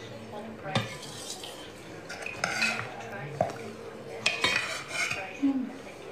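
Scattered light clinks and knocks, like dishes or cutlery being handled, with sharper knocks about a second in and just past four seconds.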